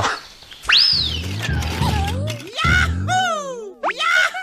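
Cartoon-style sound effects and jingle for the closing logo. A sharp boing-like whistle shoots up and slides down about a second in, a low steady tone follows, and then a string of quick falling slide-whistle glides comes near the end.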